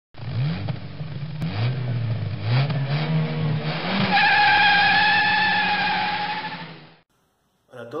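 Race-car sound effect: an engine accelerating through the gears, its pitch climbing and dropping back about four times. Over the last three seconds a steady high squeal, like tyres, runs over the engine, and it all cuts off about seven seconds in.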